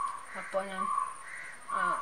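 A few short crow caws in the background, between snatches of a woman's soft speech.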